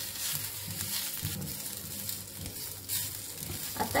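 Sliced onions with garlic and ginger sizzling in oil in a black kadhai, being roasted until browned, while a spatula stirs and scrapes them against the pan in repeated strokes.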